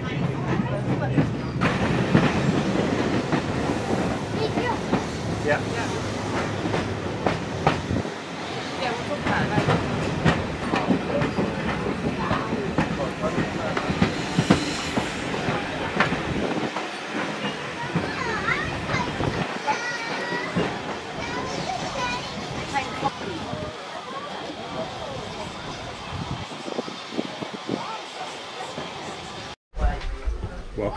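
Steam-hauled heritage train coaches running slowly into a station: wheels clattering over the rails, with a low rumble that fades after about eight seconds, under a background of passengers' voices.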